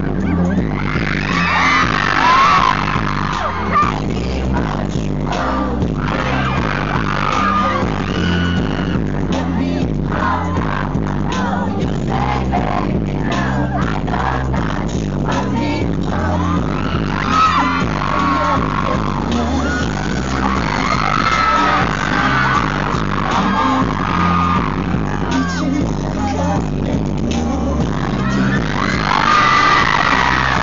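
Loud live pop-concert music from the venue's sound system, an electronic dance track with a pounding bass beat and live vocals, heard through a handheld recording in the audience. Fans scream over it at times.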